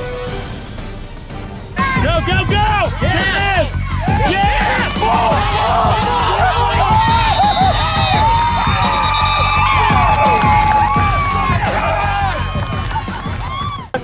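Background music with a steady beat, joined about two seconds in by many young voices shouting and cheering together over it.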